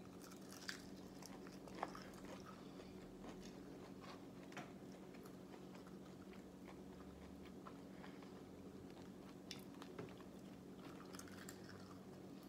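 Faint chewing of a bite of Nashville hot chicken wing, a few soft mouth clicks and crunches scattered through, over a low steady room hum.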